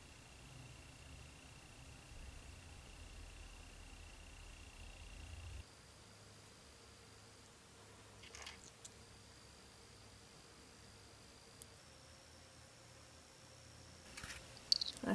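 Near silence: faint room tone, with a few faint clicks about eight seconds in and again near the end.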